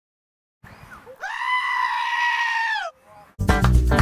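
A single long, high-pitched bleat-like scream, held for about a second and a half and sagging in pitch as it ends. Just before the end, loud outro music with bass and guitar cuts in.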